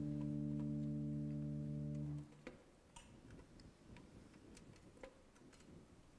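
A sustained organ chord held steady, cutting off about two seconds in, followed by faint scattered clicks and light taps in a quiet room.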